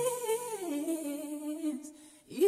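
A lone sped-up voice holds a final sung note with vibrato at the end of a Christmas song. It steps down in pitch about half a second in, holds, and fades out near the end as the backing drops away.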